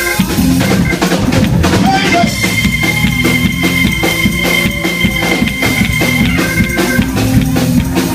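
Church praise music with a drum kit keeping a steady beat over a bass line. A long high note is held from about two seconds in until near the end.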